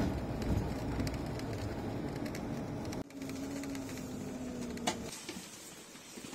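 Steady rumble of a coach's engine and road noise heard from inside the passenger cabin. About halfway through it cuts suddenly to a quieter cabin with a steady hum that fades near the end.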